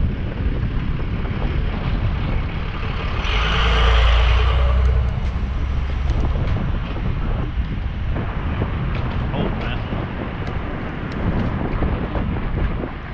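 Wind buffeting the microphone of a bicycle-mounted action camera while riding, with steady road rumble; a louder rushing swell comes about three seconds in and fades by five seconds.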